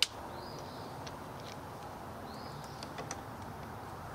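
A sharp click at the start, then a few faint clicks as small kayak rudder hardware is handled, over steady outdoor background noise. A bird calls twice, about two seconds apart, each call a short chirp that rises and falls.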